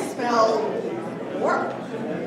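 An actor's voice delivering stage lines with exaggerated swoops in pitch, falling in the first second and rising again near the end.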